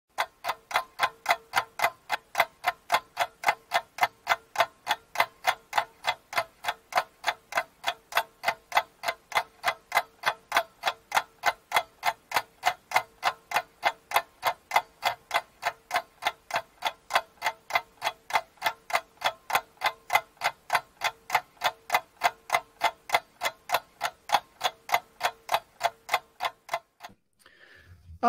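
Ticking-clock sound effect of a countdown timer: evenly spaced sharp ticks, about three to four a second, over a faint steady tone. The ticks stop about a second before the end.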